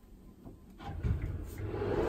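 A sliding door rolling along its track as it is pulled shut: a low, steady rumble that starts about a second in.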